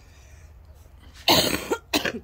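A person coughs twice about a second in: a louder, longer cough, then a short second one.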